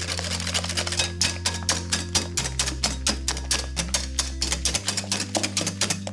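Wire balloon whisk beating eggs and sugar in a glass mixing bowl: rapid, regular clicks of the wires against the glass as the mixture is beaten pale. Background music with a steady bass line plays underneath.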